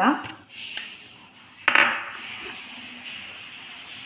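A glass bowl knocking against a stainless steel mixing bowl as mashed potato is tipped in: a small click just under a second in, then a louder clink with a faint high ring about two seconds in.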